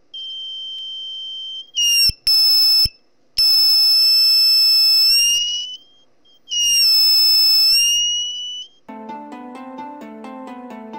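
Small electronic buzzer on a 9 V battery sounding a high, shrill steady tone, its volume set by a potentiometer being turned. The tone is soft at first, then sounds loud in four stretches that cut in and out, its pitch sliding slightly as each starts and stops. Background music begins about a second before the end.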